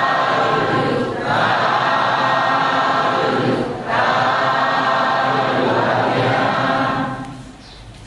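Many voices chanting a Buddhist devotional chant together on sustained notes, with two short pauses for breath about one and four seconds in, dying away near the end.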